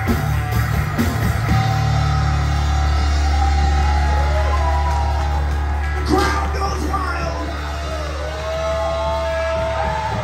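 Live rock band playing with vocals, bass, electric guitar and drums. The drum hits stop about a second and a half in, and a long low bass note is held under the guitar and the singer's voice.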